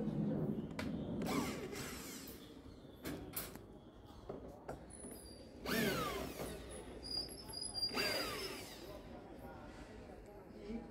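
Cordless drill-driver on the screws of a speaker cabinet's metal grille, running in short bursts. Twice, around the middle and again a couple of seconds later, the motor whine falls away sharply in pitch as the trigger is let go.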